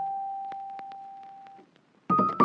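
Background music: a single sustained electric piano note, a pure tone that fades away over about a second and a half, then a short near-silent gap.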